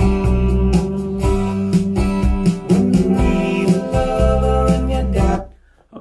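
A song played back over hi-fi loudspeakers in a room, from a native quad-DSD (DSD256) recording made from an analog master tape, with a strong bass line. The music stops about five and a half seconds in.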